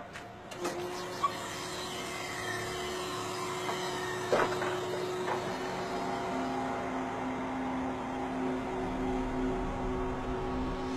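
Truck-mounted knuckle-boom crane running: a steady engine hum with whining hydraulic tones, a lower tone joining about six seconds in. A short sharp sound comes about four seconds in.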